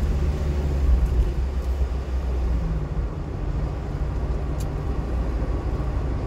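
Steady low engine and road rumble heard inside a vehicle's cabin while driving, with one faint click about four and a half seconds in.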